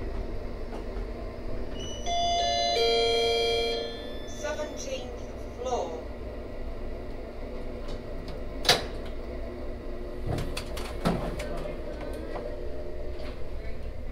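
Elevator chime of several notes struck one after another, ringing for about two seconds, with a steady low hum of the car underneath. A single sharp click follows near the middle, then a few dull knocks as the doors work.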